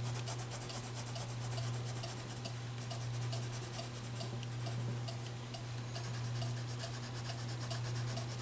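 Wax crayon scratching on paper in quick, short back-and-forth strokes as it is shaded lightly over a colouring page, over a steady low hum.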